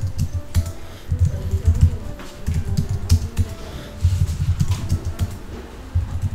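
Typing on a computer keyboard: bursts of rapid keystrokes with short pauses between them.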